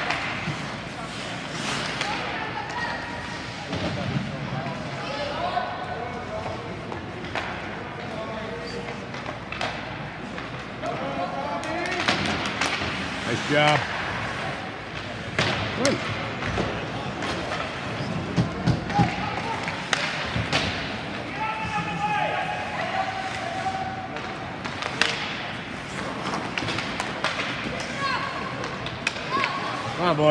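Indoor ice hockey rink during play: spectators talking in the stands, with scattered sharp knocks of the puck and sticks against the boards and ice.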